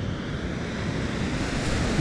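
Steady wash of ocean surf, with wind noise on the microphone.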